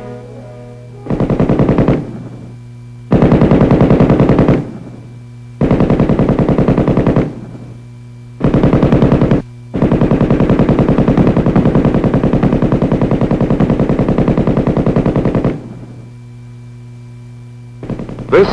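M60 7.62 mm machine gun firing five bursts of automatic fire, the last one long, about five seconds. A steady low hum from the old film soundtrack runs underneath.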